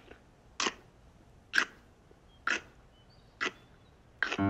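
Four crunches as a stick of celery is bitten and chewed, evenly spaced about one a second in a steady rhythm.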